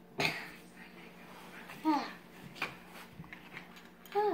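A child coughs once, sharply, about a quarter second in, then makes a brief falling vocal sound near two seconds, followed by a faint click.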